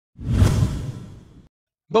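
A whoosh sound effect marking a video transition: a noisy swell that rises quickly a moment in and then fades away over about a second.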